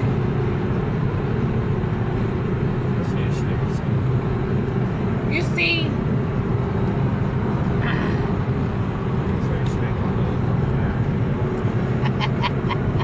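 Steady road and engine noise inside a car moving at highway speed, with a faint hum running under it.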